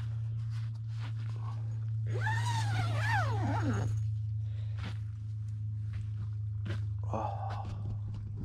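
Footsteps crunching on a pine-needle forest floor under a steady low hum. A little after two seconds in, a drawn-out voice-like sound rises and then slides steeply down in pitch, lasting about two seconds, and a shorter voice-like sound comes near the end.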